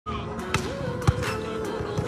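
Volleyballs being hit and bouncing on a hard indoor court: two sharp smacks about half a second apart, the second the louder, with a few fainter knocks after.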